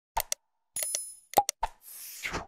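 Cartoon user-interface sound effects for an animated like-subscribe-share prompt: quick mouse clicks and pops with falling pitch, a short bell-like ding about a second in, and a swoosh near the end.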